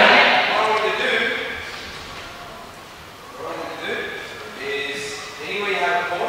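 A man speaking, his voice echoing in a large sports hall.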